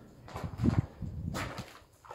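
Quiet footsteps scuffing across a gritty concrete floor strewn with rubble, with a sharper crunch about one and a half seconds in.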